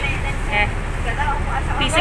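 Steady low rumble of a bus engine heard from inside the passenger cabin, with people talking over it.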